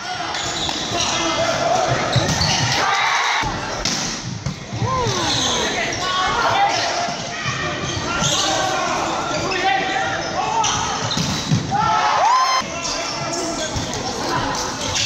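Indoor volleyball rally in a reverberant sports hall: the ball is struck and smacks the floor in sharp knocks, and players' shoes and calls mix with spectator voices.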